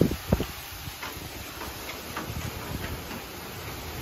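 Very strong hurricane wind and heavy rain making a steady rushing hiss, with low rumbling gusts buffeting the microphone. Two brief thumps come right at the start.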